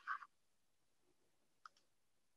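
Near silence, broken by a faint click about one and a half seconds in from a computer mouse opening the website video.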